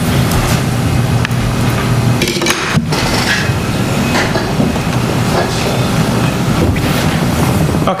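Indistinct low talk from several people over a steady hiss of room and sound-system noise.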